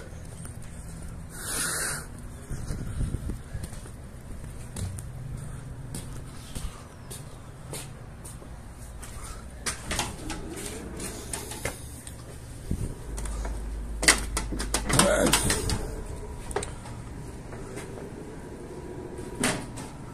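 Handheld-camera walking ambience at glass entrance doors: a steady low rumble with scattered footsteps and handling clicks, and a louder clatter of clicks a few seconds before the end as a glass door is opened.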